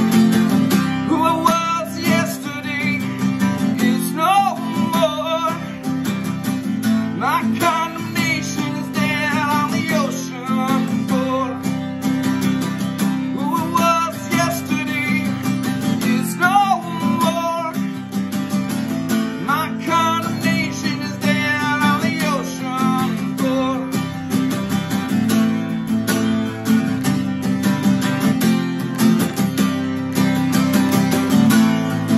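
Cutaway Ibanez acoustic guitar strummed steadily, with a man singing over it in recurring phrases.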